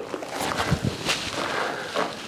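A few soft knocks over a faint steady noise, the strongest coming a little under a second in.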